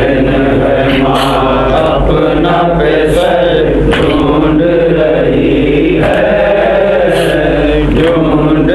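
Men's voices chanting a Shia mourning recitation (noha) into a microphone, in a continuous melodic line without pause.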